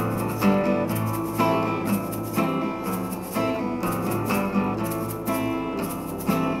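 Acoustic guitar strummed in a steady rhythm without singing, chords ringing, with a strong accented strum about once a second and lighter strokes between.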